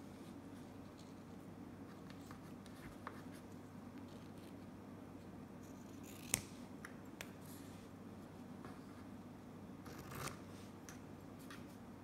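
Scissors snipping satin ribbon, trimming the tails of a bow: a few faint, separate snips, the sharpest about six seconds in and a short cluster near ten seconds.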